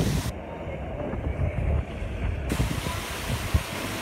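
Pool fountains and water jets splashing, with wind buffeting the microphone in an uneven rumble.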